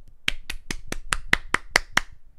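One person clapping hands, about nine quick, even claps at roughly four to five a second: a round of applause.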